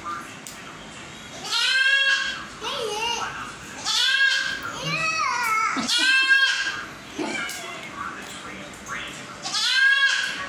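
A young goat bleating four times, each a high, wavering call, roughly two seconds apart.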